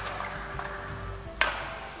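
A single sharp crack of a badminton racket striking the shuttlecock, about one and a half seconds in, ringing off in a large hall, over faint steady background music.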